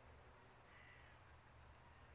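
Near silence with a faint outdoor bird call a little under a second in.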